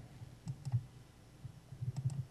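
A few faint clicks from a computer mouse being handled, over irregular soft low thumps.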